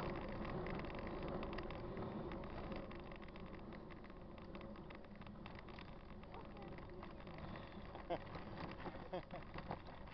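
Faint, steady rolling noise and rattle of a mountain bike riding on a road, picked up by a camera mounted on the bike, with wind on the microphone. A few brief faint pitched sounds come through near the end.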